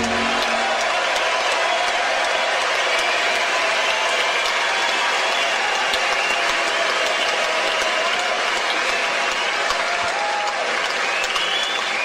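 Audience applause at the end of a live song, steady and sustained.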